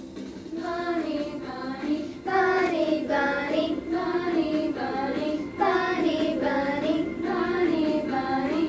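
A group of elementary-school children singing a children's song together in phrases of a second or so.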